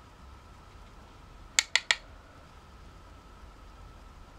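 Three quick, sharp clicks about a sixth of a second apart, from a makeup brush and plastic eyeshadow compact being handled as the brush picks up shadow from the quad.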